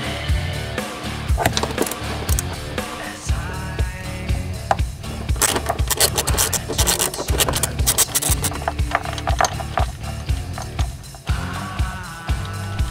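Rock music with a steady beat, over a run of rapid metallic clicks about halfway through from a ratchet wrench turning out the 14 mm seatbelt anchor bolts.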